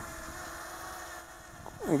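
Steady hum of a small quadcopter drone's brushless motors and propellers heard from the ground, a low tone with an overtone above it, fading about a second and a half in as the drone climbs away.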